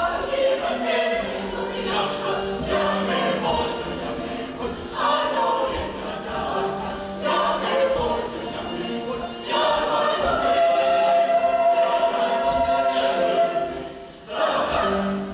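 Mixed youth choir singing a folk song in parts, in phrases that start every second or two, building to a long, loud held chord in the second half that breaks off at the very end.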